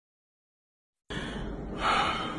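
Dead silence for about a second, then a close-up recording cuts in with low background hiss and a man's short, breathy intake of breath near the end.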